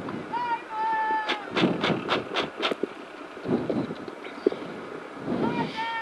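People's voices talking around the stationary car, with one held high note early on. About a second and a half in comes a quick run of about six sharp taps.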